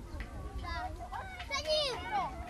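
Children's voices calling and chattering, with a loud, high-pitched call near the end.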